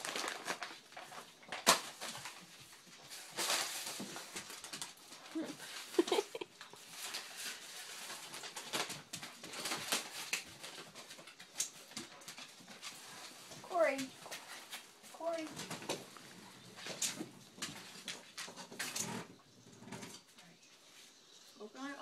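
Dogs playing with toys on a wooden floor: scuffling, rustling and knocks, with a few short falling dog vocalisations.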